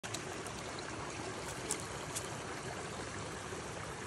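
Small rocky woodland brook running, a steady rush of water. Three brief clicks stand out, near the start and around the middle.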